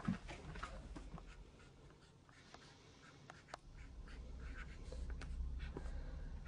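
Pen scratching on paper in short, irregular strokes, faint, with a low thump at the very start.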